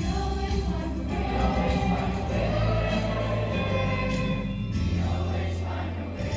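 A mixed show choir singing a song in held, sustained notes over music with a deep bass line.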